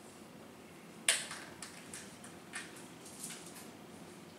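Dry-erase marker drawing small circles on a whiteboard: a sharp stroke about a second in, then a string of short scratchy marker strokes.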